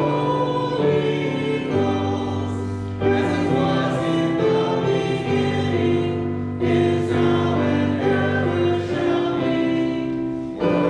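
Choir singing a hymn in harmony, holding sustained chords that change every second or two.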